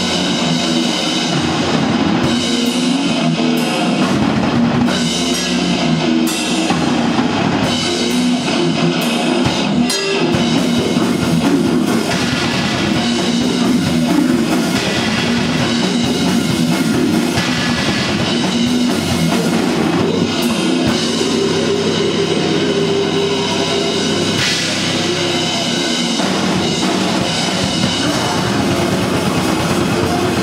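Live brutal death metal band playing loudly and without a break: distorted electric guitar, bass guitar and a drum kit.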